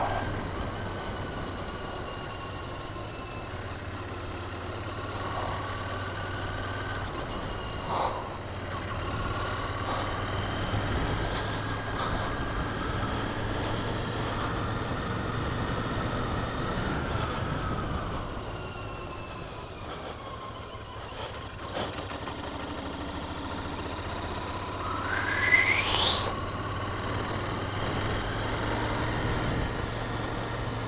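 Motorcycle engine running while riding along a winding road, its pitch rising and falling with the throttle. Late on, the engine pitch climbs sharply in a quick rev, the loudest moment.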